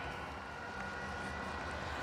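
Steady, low murmur of an arena crowd, an even wash of noise with a faint steady hum beneath it.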